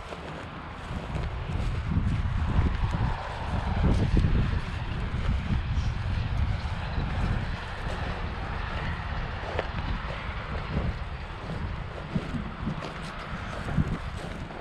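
Wind buffeting an outdoor microphone, a low rumble that swells and fades in gusts and is strongest in the first few seconds.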